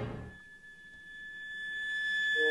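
A bowed cello note dies away, then a steady, high, pure electronic tone swells in gradually from the quiet, with a fainter higher tone above it.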